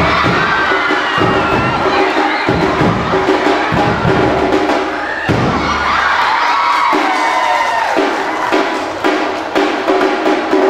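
An ensemble of Minangkabau tambua drums, large double-headed drums beaten with sticks, played together while a crowd cheers and shouts over them, with the cheering swelling near the start and again past the middle.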